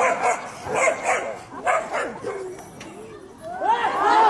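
Dogs barking at each other in a quick run of sharp barks over the first two seconds, then quieter.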